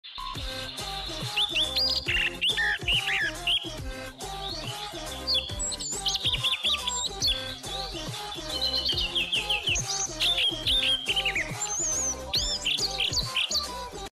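Intro music with a steady beat, overlaid with rapid chirping and whistled bird calls that slide up and down in pitch.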